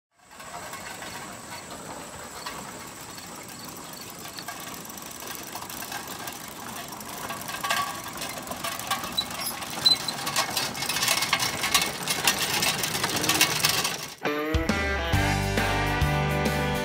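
A team of draft horses pulling a farm wagon: a clattering of hooves, harness and wagon that grows louder as it comes closer. About fourteen and a half seconds in, a country song with strummed guitar starts.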